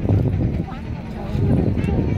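People talking in the background over a loud, uneven low rumble.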